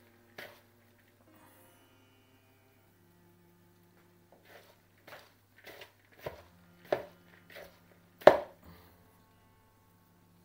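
A hand tossing and squeezing chopped raw vegetables and leafy greens in a bowl: a run of short, irregular rustles and squelches starting about four seconds in, the loudest near the end.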